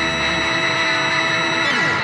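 Rock music: a distorted electric guitar chord held and ringing out as a sustained, noisy drone, with no drums.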